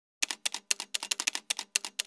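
Typewriter keystroke sound effect: a rapid run of sharp key clacks, about ten a second, as text is typed out letter by letter.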